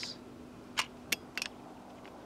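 Three short, sharp clicks in quick succession about a second in, a third of a second or so apart.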